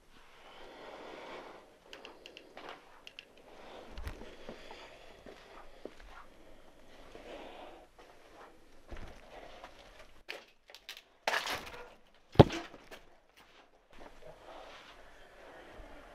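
Footsteps on a floor littered with debris, with scattered clicks and soft thumps, and a loud, sharp knock about twelve seconds in.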